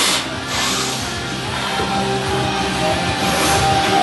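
Rock music with guitar playing steadily.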